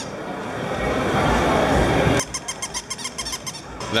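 Battery-operated walking plush toy dogs on a store display. Their mechanism makes a fast, even clicking, about nine clicks a second, in the second half, over busy mall background noise.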